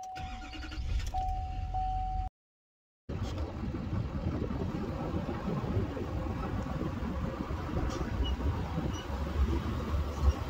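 Pickup truck cab: a repeating warning chime sounds as the engine starts. After a short cut, the truck pulls a loaded hay trailer with a steady low engine and road rumble.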